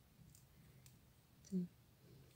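Faint, light clicks of a fine steel crochet hook and thread being worked around a plastic drinking straw, with one short, louder low sound about one and a half seconds in.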